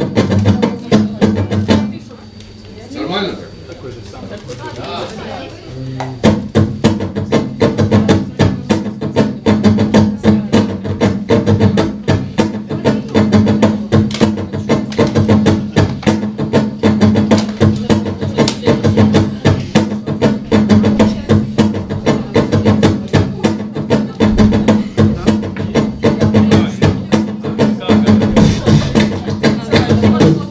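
A fast, even run of dry percussive clicks over a steady low drone, made as a rhythmic background groove. It thins out to a quieter stretch with gliding sounds a couple of seconds in, then returns in full about six seconds in and keeps going.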